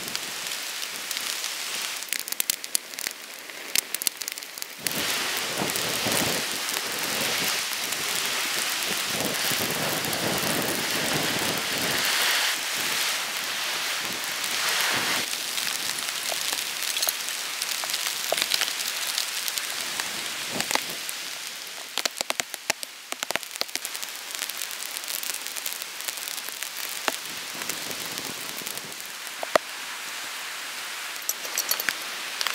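Rain falling steadily, with individual drops ticking sharply. It is heavier from about five seconds in until about two-thirds of the way through, then eases.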